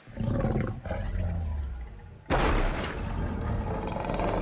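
Film sound effect of a giant dragon roaring: a low growl first, then a much louder roar that bursts in suddenly a little over two seconds in and carries on.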